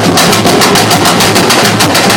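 Brazilian samba drum ensemble playing, a fast, even run of drum and snare strikes over a steady low bass-drum pulse.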